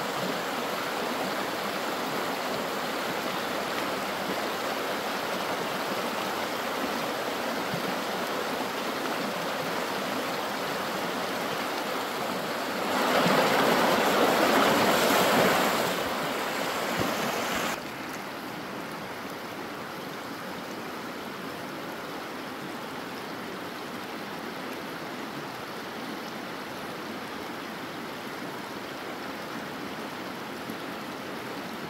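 Shallow stream rushing over rocks, a steady hiss of running water. It swells louder for a few seconds about halfway, then drops suddenly to a quieter, even rush.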